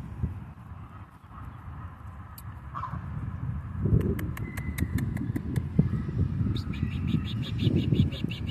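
Canada geese grazing close by, with wind rumbling on the microphone. A short call comes about three seconds in, then scattered sharp clicks, and near the end a rapid run of clicks, about nine a second.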